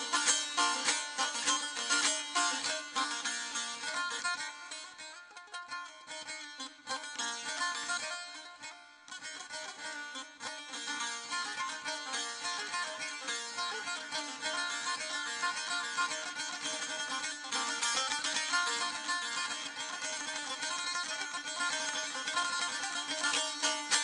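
Ashiq saz playing solo, with fast plucked strumming over ringing drone strings, as an instrumental interlude between sung verses of an Azerbaijani ashiq song. It thins out and drops in level from about four to ten seconds in, then fills out again.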